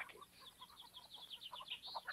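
Faint bird chirping: many short, high chirps in quick succession.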